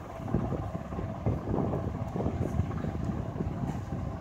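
Handling noise from a phone being moved about: a low rumble with scattered soft knocks and rubs against the microphone.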